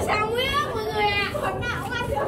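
Speech only: children's high-pitched voices calling out and talking.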